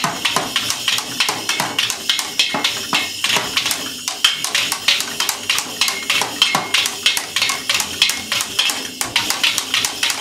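Child's toy drum kit beaten with drumsticks: a fast, uneven stream of hits on the small drums and cymbal, several a second, with the thin cymbal ringing through.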